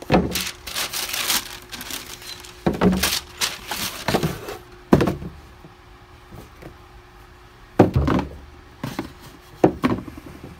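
Tissue paper rustling and a cardboard shoebox being handled on a wooden shelf, with several sharp thuds and knocks as the lid goes on and a shoe is set on top of the box; the loudest thud comes about eight seconds in.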